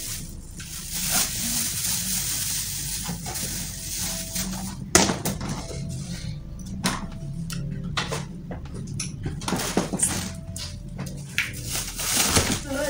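Black plastic bags rustling and crinkling, with sharp crackles and knocks as the items are handled, over faint background music.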